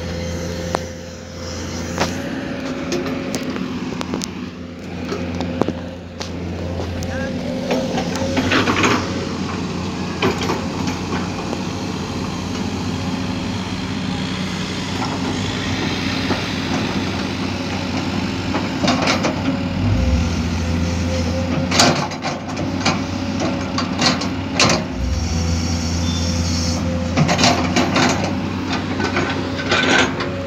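Heavy construction machine's diesel engine running at a steady pitch, with scattered sharp knocks and clanks.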